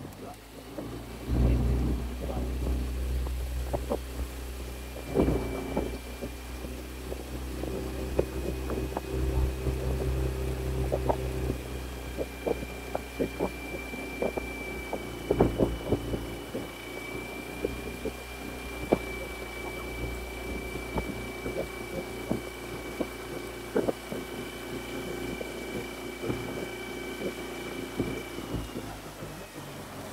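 A small launch's motor running steadily, a low hum with a faint high whine over it, which starts about a second and a half in; scattered light knocks and splashes of water throughout.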